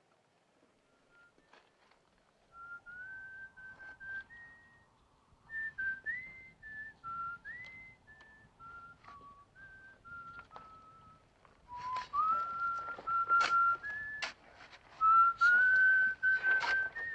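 A man whistling a slow tune, one note after another, starting a couple of seconds in. From about twelve seconds in it is joined by sharp strikes and scrapes of shovels digging into earth, which are the loudest sounds.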